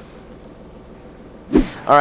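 A faint, steady background rumble with no distinct events for about a second and a half. Then a man's voice starts abruptly and loudly near the end, beginning "all right".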